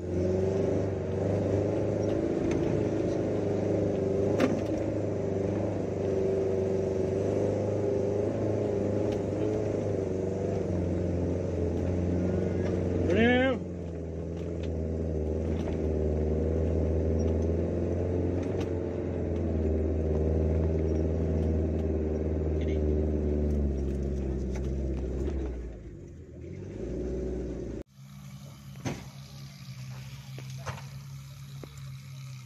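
Suzuki Jimny's engine heard from inside the cabin, pulling steadily under load up a steep dirt climb. About halfway through, a short, loud, rising high-pitched sound cuts across, and the engine note drops lower. The engine fades near the end, and then the sound breaks off.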